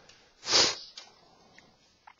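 A person sniffing once, a short sharp breath in through the nose about half a second in.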